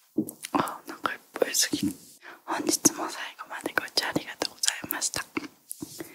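A woman whispering close to the microphone in short, broken phrases.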